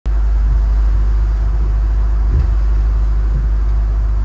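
Steady, loud low rumble of a motorboat running under way across choppy water.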